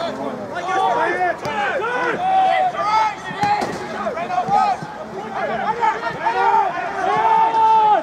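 Men shouting and calling out across a football pitch, several voices overlapping, with one long drawn-out shout near the end.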